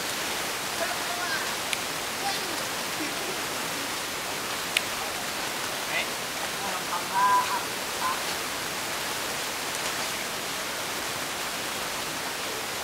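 A steady rush of water, with faint voices behind it and one short, louder call about seven seconds in.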